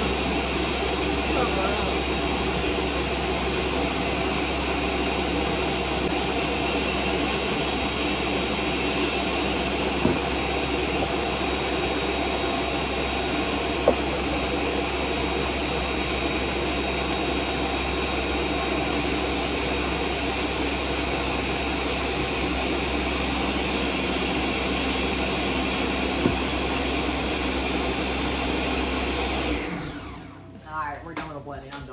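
Countertop blender running steadily at full speed, pureeing fried chicken with water into a thick sludge, then switched off so that it cuts out suddenly near the end. A few light clicks sound over it.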